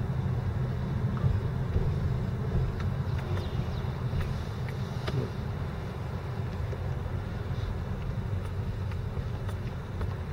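Steady low rumble of a car's engine and tyres heard from inside the cabin as the car rolls slowly, with a few faint ticks.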